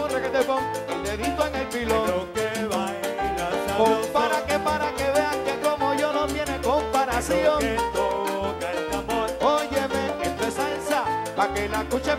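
A live salsa band playing an instrumental stretch between sung lines, with piano, bass, steady hand percussion and a horn section. Several rising slides stand out in the upper parts, one about seven seconds in and another near the end.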